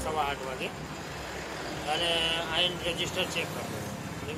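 Voices speaking in two short stretches over a steady background of road vehicle noise.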